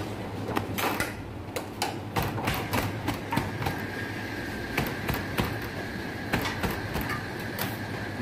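Cooked roti canai being slapped and crushed between the hands on a steel counter to loosen its flaky layers: a run of irregular sharp slaps, roughly two a second, over a steady low hum. A faint steady high tone comes in about halfway through.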